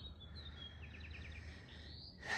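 Faint outdoor ambience with a low rumble, and a small bird chirping: a short high falling note at the start, then a quick run of about six chirps about a second in.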